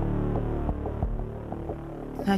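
Low, steady droning background music made of several sustained low tones, with faint irregular ticks, fading somewhat toward the end.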